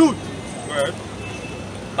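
Steady street traffic noise in the background, with a brief fragment of a man's voice just under a second in.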